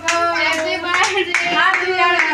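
Several people clapping their hands in a steady rhythm, about two claps a second, while voices sing along.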